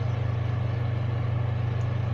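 A steady low hum with a faint hiss behind it, unchanging throughout.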